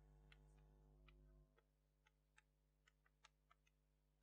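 Faint, irregular chalk taps and clicks on a blackboard as words are written, over a faint low hum that drops away about one and a half seconds in.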